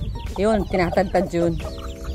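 Chickens clucking: several short calls in a row, each rising and falling in pitch, with a briefly held note near the end.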